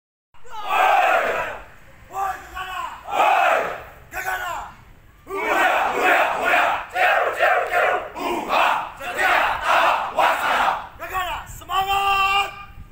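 A squad of men shouting a yel-yel, a unit chant, together in short rhythmic phrases. From about halfway through, the shouts come about twice a second, and near the end they turn more sung.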